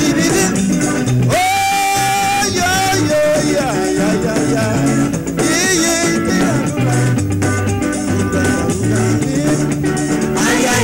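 Calypso band music with a stepping bass line and steady percussion. A held melody note sounds about a second in, followed by short gliding phrases.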